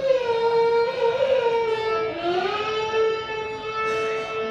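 Carnatic music with violin: one slow melodic line that slides between notes, then settles on a long held note about halfway through.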